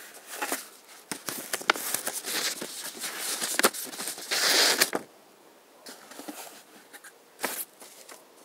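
Tissue paper rustling and crinkling as it is handled and unfolded inside a cardboard box, with small clicks of handling. The loudest rustle comes just after four seconds; after that it turns quieter, with only a few light taps.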